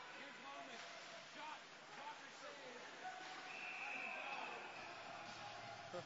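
Ice hockey arena ambience: faint spectator voices mixed with scattered knocks from sticks and puck. A referee's whistle blows one steady high note for about a second, three and a half seconds in, stopping play after a scramble at the net.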